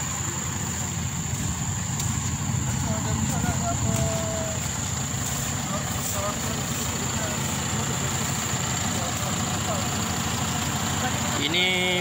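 Diesel engine of a heavily loaded lorry running steadily at low revs as it crawls through soft, rutted sandy ground.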